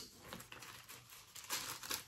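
Faint rustling and crinkling of thin Bible pages being turned by hand, with a few small soft bumps, in a small room.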